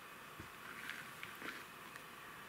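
Faint rustling of freshly cut lavender stems being spread out by hand on a tray, with a soft low bump about half a second in and a few short rustles after it.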